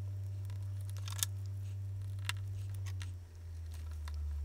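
A few faint clicks as plastic spring clamps are fitted onto the plates, about one and two seconds in, over a steady low hum that drops slightly in pitch about three seconds in.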